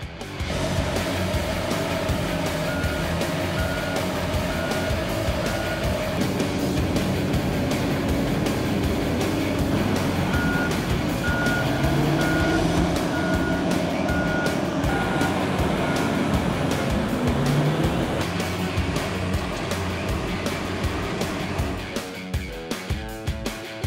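Heavy diesel mining machinery at work, with Komatsu WA900 wheel loaders and haul trucks running in a steady engine drone whose pitch shifts as they work. A reversing alarm beeps in two runs: about four beeps a few seconds in, then about eight more from about ten to sixteen seconds in.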